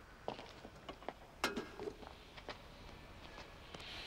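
Faint footsteps and a handful of light knocks and scrapes as a metal folding chair is set down and sat on, the sharpest knock about one and a half seconds in.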